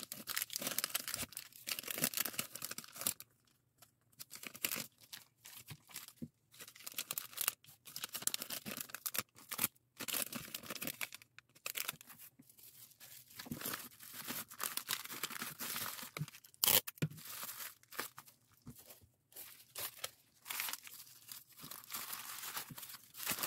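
Thin clear plastic packaging bags crinkling and rustling in irregular bursts as small items are handled and slipped into them, with one sharp click about two-thirds of the way through. Near the end, bubble wrap rustles against a plastic mailer bag.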